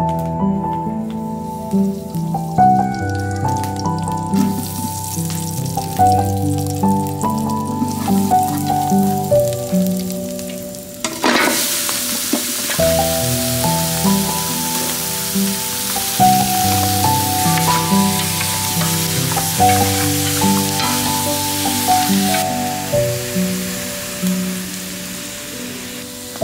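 Chopped pork bones sizzling as they fry in a large metal pot over a wood fire. The sizzle comes in faintly a few seconds in, turns loud from about halfway, and eases near the end. Melodic background music plays throughout.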